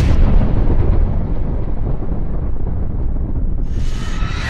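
A boom-like sound effect that has just hit, ringing out as a dense low rumble, with a whoosh sweeping in near the end.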